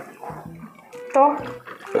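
Wet chewing and mouth smacks of someone eating roast pork leg close to the microphone, with small clicks throughout. A short spoken word cuts in about a second in and is the loudest sound.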